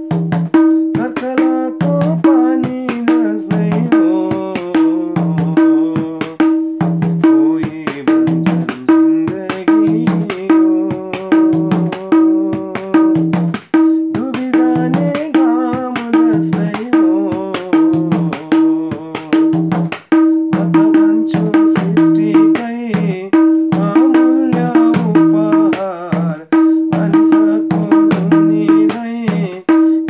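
Madal, the Nepali double-headed barrel hand drum, played with both hands in a steady run of the maruni rhythm, its low bass strokes and higher ringing strokes alternating. A melody plays along with it.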